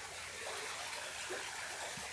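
Steady, faint rush of running water from a small garden waterfall.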